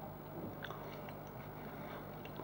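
A quiet pause: faint room tone with a steady low hum and a few soft small ticks.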